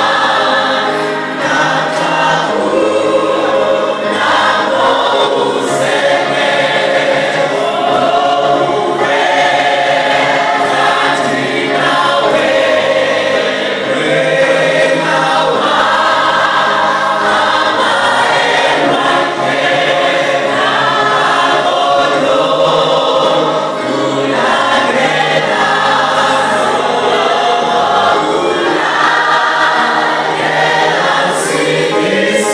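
A church choir singing a gospel hymn, many voices together in harmony with long held notes, continuous throughout.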